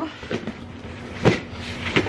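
Long cardboard shipping box being handled and set down on the floor: rustling and scuffing, with one sharp thump about a second in and a lighter knock near the end.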